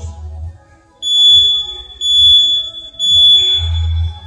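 Gym interval timer beeping three times, one high beep a second: the countdown ending a rest period and starting the next work interval. Background music plays underneath.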